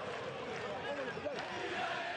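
Football stadium crowd: many voices shouting and talking at once, a steady din.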